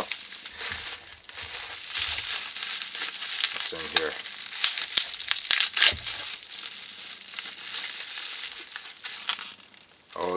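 Plastic bubble wrap crinkling and rustling as vacuum tubes are handled and unwrapped, with a cluster of sharper crackles about halfway through.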